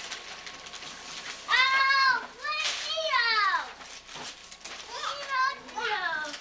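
A young child's high-pitched, wordless vocal sounds: a held call about one and a half seconds in, then a falling cry, and shorter calls near the end.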